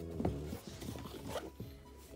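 Hands handling a sneaker, the fabric and suede of its tongue and collar rustling and rubbing under the fingers, with background music.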